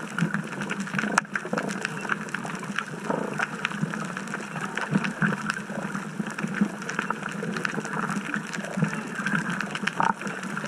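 Underwater sound picked up by a camera below the surface: a steady, muffled water noise with many scattered sharp clicks and crackles.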